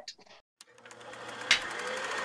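Sound effect at the start of an animated logo sting: a rapid, even mechanical clatter that swells steadily louder, with a sharp click about one and a half seconds in.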